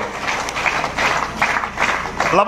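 Crowd applause: many hands clapping.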